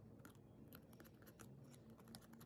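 Very faint, irregular scratches and clicks of a craft knife blade scoring the joints between carved stones in a polystyrene foam strip.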